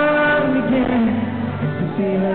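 Live song: a male voice singing over a strummed acoustic guitar through a concert PA, a long held note giving way to lower, shorter notes about half a second in.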